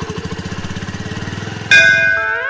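Small scooter engine idling with a rapid, even putter. Near the end a loud, bright musical chime cuts in over it.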